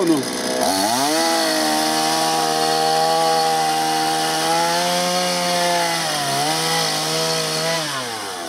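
Petrol two-stroke chainsaw revved up under load and held at high speed, cutting at the front wheel-arch corner of the car. The pitch climbs sharply about a second in, dips briefly near the end, then drops off.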